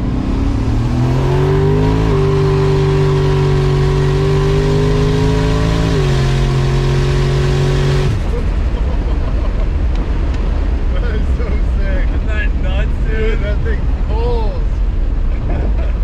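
Mercury Marauder's V8 pulling hard, heard from inside the cabin: the engine note climbs for about two seconds, holds nearly level, drops a step about six seconds in, then falls away about eight seconds in as the throttle closes, leaving road noise with laughter over it.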